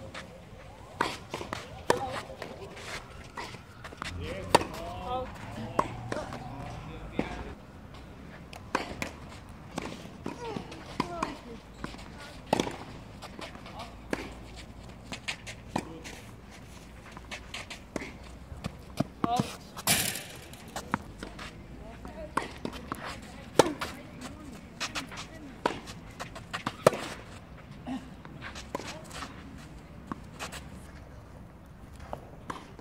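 Tennis balls struck by rackets and bouncing on a clay court during rallies: sharp pops at irregular intervals, some close and loud, others distant, with voices talking faintly in the background.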